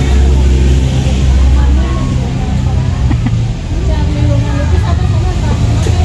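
Outdoor roadside ambience: a steady low rumble, heaviest in the first couple of seconds, with people talking faintly in the background.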